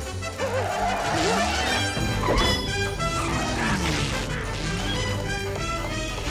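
Fast orchestral chase music from a cartoon score, with repeated crashes and clatters of kitchen pots and utensils knocked about.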